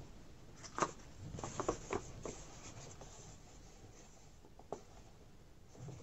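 Faint scrapes and light taps of a mini iron pressed and shifted against a cardboard egg carton while fusing a fabric cut-out to its lid, mostly in the first half, with one small tap near the end.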